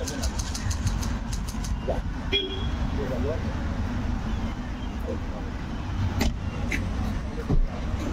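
Street traffic noise, a steady low rumble of engines, with a quick run of sharp clicks in the first second and a few single clicks later. A short high beep sounds a little over two seconds in.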